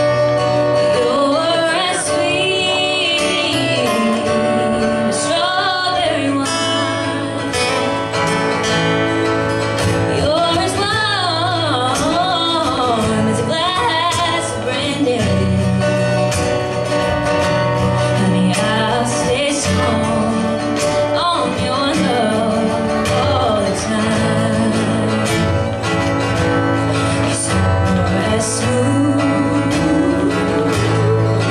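Live acoustic country song: a woman singing lead, accompanied by two acoustic guitars.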